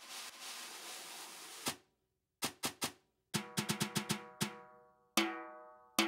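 Sampled Mapleworks Custom 6x13 maple snare played with brushes, snares off, auditioned one articulation at a time in BFD3. First comes a brush swish of about two seconds that ends in a stroke. Then three quick single strokes, a fast run of strokes, and one hit near the end, each with a pitched ring from the snares-off shell.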